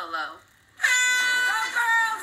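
An air horn sounds about a second in, a sudden steady held blast, with a voice shouting over it, heard through a television's speaker. Just before it, a woman's speech ends and there is a moment of near silence.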